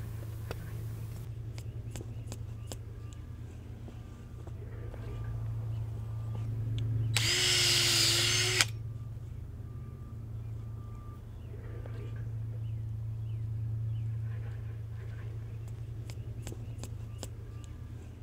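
Power drill boring into an avocado flare root in one short run of about a second and a half, some seven seconds in, over a steady low hum. A few light taps of a mallet setting plastic infusion ports come before and after it.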